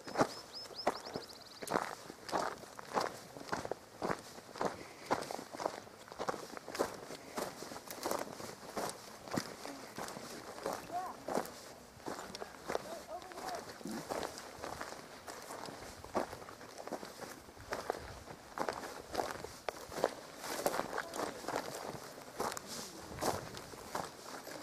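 Footsteps of a person walking at a steady pace on dry ground and grass, evenly spaced crunching steps.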